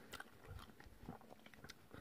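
Faint chewing of a mouthful of peanut butter sandwich, a few soft mouth sounds over near silence.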